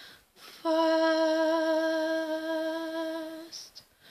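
A woman humming one long, steady note with a slight waver, unaccompanied, coming in about half a second in and ending shortly before the end, followed by a short breath.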